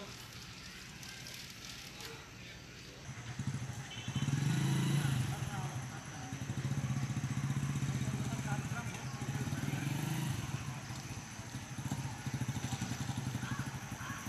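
A small engine running, a low steady pulsing note that sets in about three seconds in and is loudest around the fifth second, with faint voices in the background.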